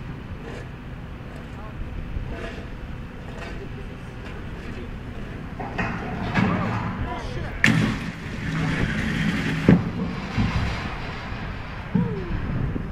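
Mobile crane's diesel engine running under load, louder in the second half, with two sharp knocks about two seconds apart.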